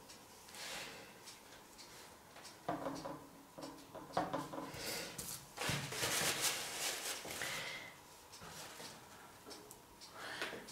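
Paper towel rustling and crumpling in the hand, with gloved hands brushing and tapping around a canvas on a plastic sheet. The noise comes in irregular bursts, loudest and longest about six seconds in.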